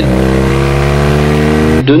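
A motor vehicle engine accelerating, its pitch rising steadily for nearly two seconds before it cuts off abruptly.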